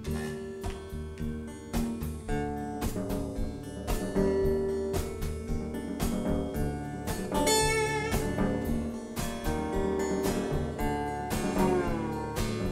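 Live blues instrumental: an acoustic guitar played lap-style with a slide, picked in a quick run of notes over light drum accompaniment. There is a sliding, wavering note about seven and a half seconds in.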